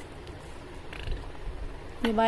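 Steady low hum with a few faint clicks and a short rustle about a second in, as small plastic jars and objects on a wooden shelf are handled.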